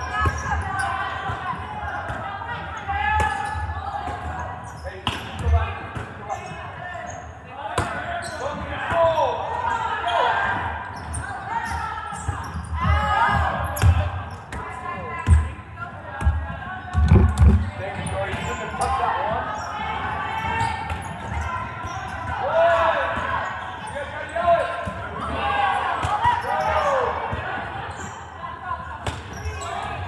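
Volleyball gym din: many overlapping voices calling and chattering, with repeated thuds of volleyballs being hit and bouncing on the hardwood floor, echoing in the large hall. The heaviest thuds come a little past halfway.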